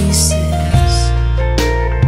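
Worship band music, with held guitar chords over a steady bass; the chord changes about three-quarters of a second in.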